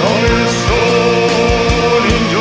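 Symphonic black/death/doom metal: dense held chords with pitch-gliding lines over them and kick drum hits a few times a second.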